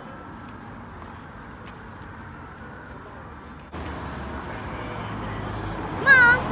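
Steady outdoor street ambience with distant road traffic. About two-thirds of the way through, the background shifts suddenly to a slightly louder, lower hum.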